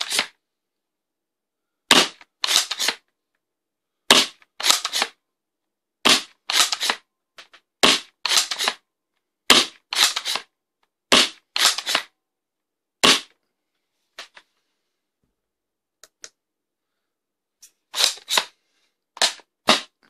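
Worker Seagull spring-powered foam dart blaster, fitted with a 210 mm barrel and 250 mm spring, being primed and fired repeatedly: sharp clacks, mostly in pairs about half a second apart, roughly every two seconds, with a few seconds' lull in the middle.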